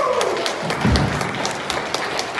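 Audience clapping as a live band's song ends, the claps coming as many separate sharp snaps. A pitched note slides down and fades in the first half second, and there is a low thump about a second in.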